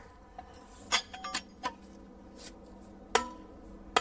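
Hammer striking steel plug-and-feather wedges set in drilled holes in limestone: a few sharp metallic blows, each with a short ringing tone, the strongest about a second in, near three seconds in and at the very end.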